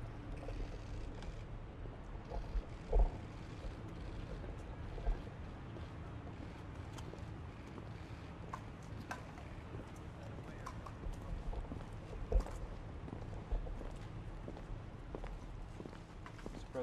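Footsteps of several people on a stone walkway: hard-soled shoes and high heels clicking irregularly, over a steady low outdoor hum.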